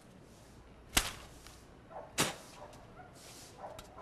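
Two sharp cracks about a second apart, the first the louder, over a quiet background.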